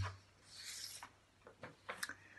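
A brief soft rustle about half a second in, then a few faint small clicks near the end, in a quiet room.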